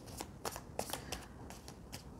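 A deck of tarot cards being shuffled by hand: a soft run of card snaps and rustles, about three a second.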